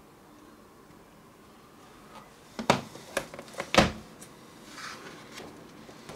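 Pages of a book of thick, heavy paper being turned and handled: quiet at first, then a few sharp paper slaps and rustles about halfway through, and a fainter rustle a second later.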